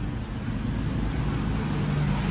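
Steady low background rumble with a faint low hum, and no one speaking.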